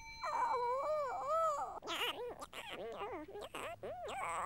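Morph's squeaky, wordless cartoon voice moaning and whimpering as he lies ill: a string of wavering cries that swoop up and down in pitch, with brief breaks between them.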